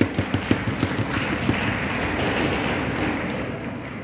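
Audience applause: a few sharp, separate claps that thicken about a second in into steady, dense clapping, which dies away near the end.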